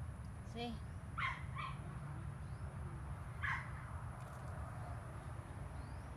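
A few short animal calls over a steady low rumble: one about half a second in, two more at about a second and a half, and another a little past the middle.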